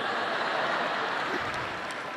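Congregation laughing together, a dense wash of many voices with no single laugh standing out, slowly fading.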